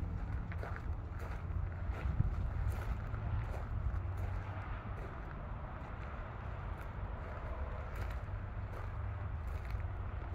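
Wind buffeting the phone's microphone as a steady low rumble, with faint footsteps on gravel ticking through it at a walking pace.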